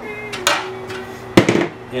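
Metal calipers being handled: a light click about half a second in, then a sharp metallic knock a little before the end.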